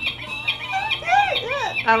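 Recorded falcon call: a high, screeching cry repeated about four times a second. A woman's voice and laughter run over it, with a laugh near the end.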